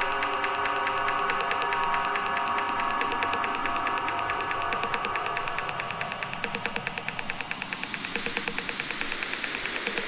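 Quiet, beatless passage of a deep dubstep track played from vinyl: sustained electronic pad tones over a fast, even high ticking, with no bass, slowly fading.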